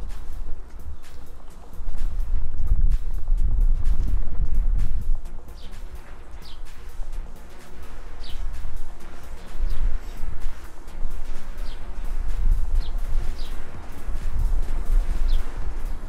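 Wind rumbling on the microphone in uneven gusts, with a bird giving short high chirps about once a second from about five seconds in.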